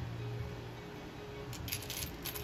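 Quiet background music with steady held notes, and a few light clinks near the end from small metal charms being picked through with tweezers.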